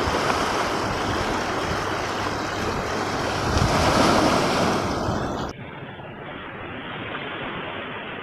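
Small waves washing over rocks and pebbles at the water's edge, swelling to a louder rush about four seconds in. About five and a half seconds in it cuts off suddenly to a quieter, duller wash of the sea.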